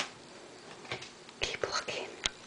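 Soft whispering in short breathy bursts, with a sharp tap at the start.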